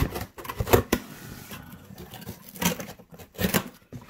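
Scissors cutting through packing tape and cardboard on a shipping box: an irregular series of sharp snips and crackles.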